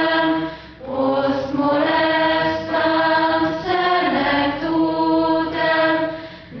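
Slow choral singing in long held notes that step to a new pitch about every second, with a short break about a second in.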